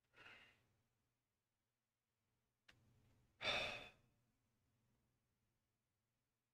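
A man sighing: a short breath just at the start, a small click, then a louder, longer sigh about three and a half seconds in.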